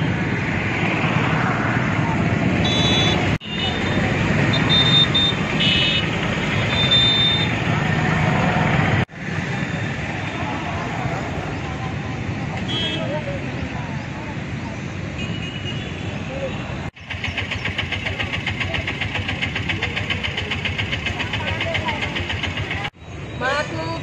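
Outdoor roadside ambience: passing vehicle traffic and indistinct voices, broken by abrupt edits every few seconds. Brief high tones come in the first third, and a fast, even pulsing runs through a later stretch.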